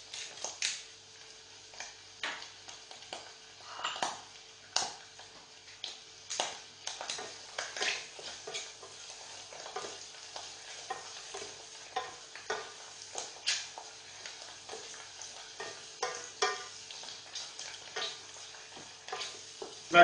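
Wooden spoon stirring mushrooms sautéing in a stainless steel saucepan: irregular knocks and scrapes of the spoon against the pan over a light frying sizzle.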